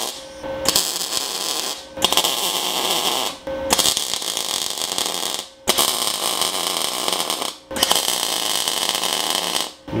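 MIG welding arc from a 250-amp inverter MIG welder, fusing thick steel plate to a steel tube. The arc runs in about five stretches of one to two seconds each, with short breaks between them as the welder stops and restarts.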